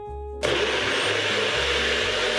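Single-serve personal blender switching on about half a second in and running steadily, its motor and blade churning fruit for a smoothie.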